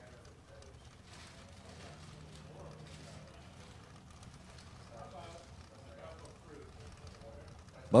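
Quiet background with faint, distant voices talking now and then.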